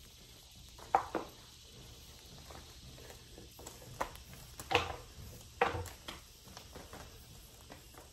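Rubber-jacketed extension cord rubbing and slapping against an arm and shirt as it is wound into a coil around the forearm and elbow: a few short rustles, the loudest about five seconds in.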